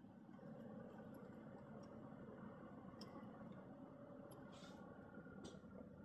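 Near silence: the quiet room tone of a car cabin, with a faint steady hum and a few faint ticks.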